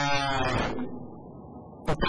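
A person's voice holding one long, steady vowel for about a second, then fading. A sharp click comes near the end.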